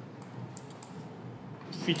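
A few faint, quick computer clicks over a steady low hiss, then a man starts speaking near the end.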